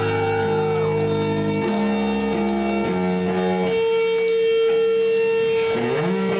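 Live stoner/thrash band: electric bass and guitar play a heavy riff, the low notes changing every second or so, over one long held high note.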